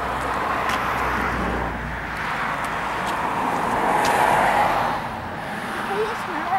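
Road traffic passing: tyre and engine noise that swells twice, loudest about four seconds in, then fades.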